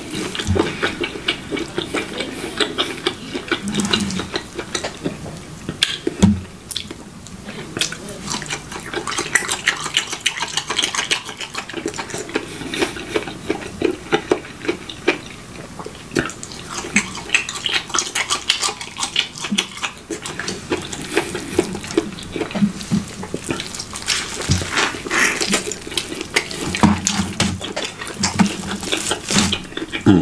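Close-miked eating: wet chewing and lip smacking on tomahawk steak and asparagus, a steady run of small sticky mouth clicks with a few soft low thuds.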